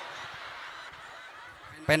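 Low murmur of a seated crowd at an outdoor gathering, with no single clear voice, until a person starts speaking into the microphone near the end.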